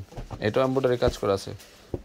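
A person speaking Bengali in a drawn-out, sing-song sales call, with long held vowels, then a short pause near the end.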